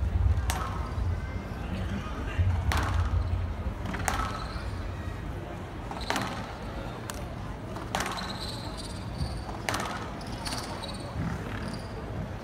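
Squash rally: the ball cracks sharply off rackets and the walls about every one and a half to two seconds, with brief squeaks of court shoes on the wooden floor between shots.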